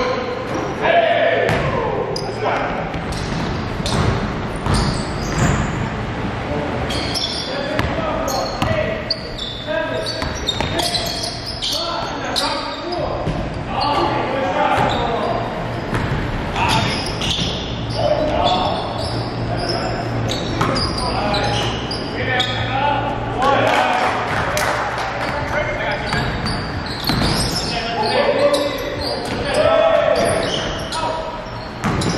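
A basketball bouncing on a gym floor during play, amid players' indistinct shouts and calls, all echoing in a large gymnasium.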